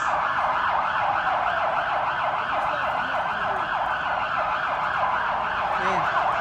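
Police car siren sounding continuously in a fast, repeating yelp, several quick pitch sweeps a second.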